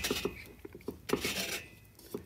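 Light metallic clicks and scrapes from a hand-turned Neway valve seat cutter and its T-handle wrench on a valve seat, during the 45-degree seat cut. The clicks come scattered and thin out toward the end.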